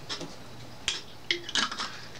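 Screw cap being twisted on a glass bottle of prune juice as it is handled: one sharp click just before a second in, then a few short clicks and scrapes.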